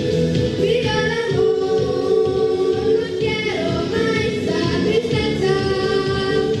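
A song sung by girls' voices over instrumental accompaniment, the melody rising and falling in long held phrases.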